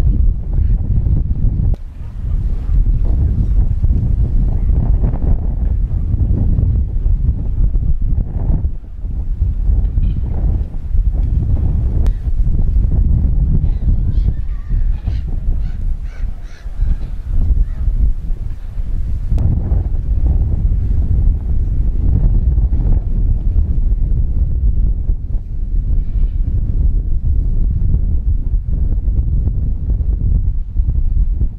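Wind buffeting the microphone in a loud, gusting rumble, with gulls calling faintly a few times, most clearly around the middle.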